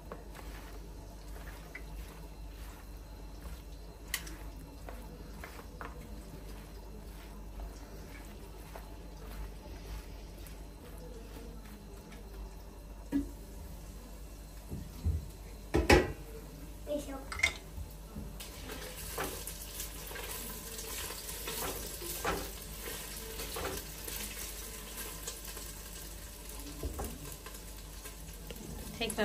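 Chopped vegetables being stirred in a metal baking tray, with a few sharp knocks of a utensil against the tray, the loudest just past halfway. About two-thirds of the way in, a steady hiss joins.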